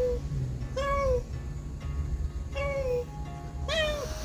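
Adult cat meowing repeatedly: short, plaintive calls about a second apart, each rising and then falling in pitch. Background music plays underneath.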